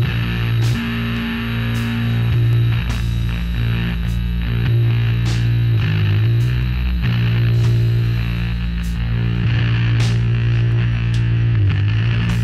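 Loud live doom music: a heavily amplified, sustained low drone that holds steady, with its pitch sliding down and back a couple of times, and a few sharp clicks over it.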